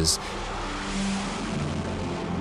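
X-47B unmanned aircraft's jet engine, a Pratt & Whitney F100-PW-220U turbofan, running at launch power as the aircraft is catapulted down the carrier deck: a steady rushing noise.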